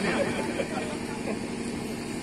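Faint voices murmuring over a steady low, engine-like hum.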